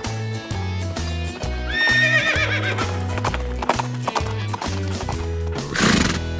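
Background music with a steady bass line, overlaid with a horse whinny sound effect about two seconds in, a wavering call that falls in pitch, then clip-clopping hoofbeats. A loud burst of noise comes near the end.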